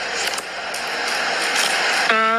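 Steady rushing noise with no pitch to it, slowly growing louder.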